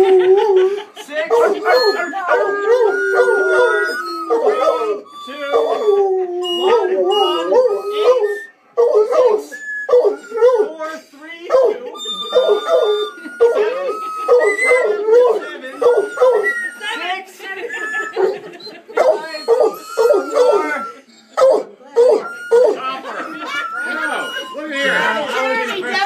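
A band of pitched toy whistles, each blown by a different person when pointed to, sounding a simple tune one note at a time; the notes are short, some waver or slide in pitch, and the first is held long. Near the end the playing turns jumbled, with several whistles and voices overlapping.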